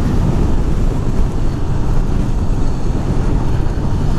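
Steady wind noise on the microphone while riding a 2018 KTM Duke 390 at road speed, with its single-cylinder engine faint beneath it.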